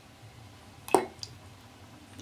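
A small plastic toy figure dropped into a glass of water: one short plop about a second in, followed by a faint tick. A faint low hum sits underneath.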